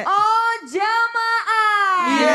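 A woman singing a sholawat into a microphone: high, drawn-out notes that slide and bend in pitch, with two short breaks between phrases.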